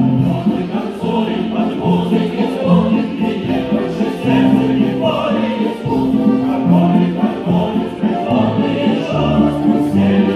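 Stage music for a folk dance, with a choir singing held notes over the accompaniment, loud and continuous.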